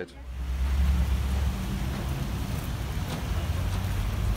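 Road traffic passing on a wet road: a steady low rumble of car and lorry engines with the hiss of tyres on wet asphalt.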